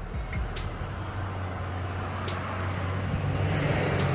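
Background electronic music in a build-up: a steady low bass under a rising hiss that grows louder.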